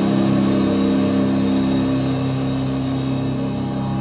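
A rock song's final chord held and ringing out: a steady, sustained drone with no drums, slowly fading.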